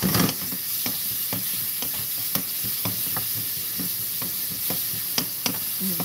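Sliced onions and carrots sizzling as they are stir-fried over high heat in a non-stick frying pan, with a wooden spatula knocking and scraping against the pan about twice a second.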